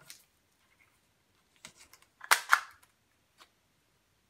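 Plastic tag-attacher gun clicking as it is squeezed and worked: a few light clicks, then two loud sharp snaps about two and a half seconds in, and one faint click near the end.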